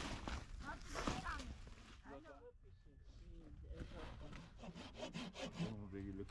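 Hand saw cutting a wooden tent pole, with quick back-and-forth rasping strokes, most clearly in the second half.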